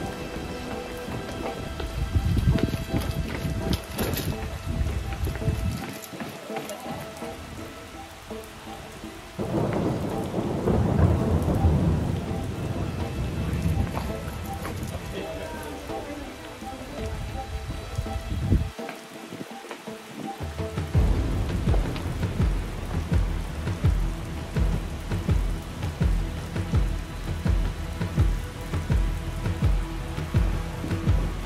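Ominous film sound design: deep thunder-like rumbling and a rain-like hiss under sustained eerie tones, with the low rumble dropping away twice. In the last third, a low pulse repeats about once a second.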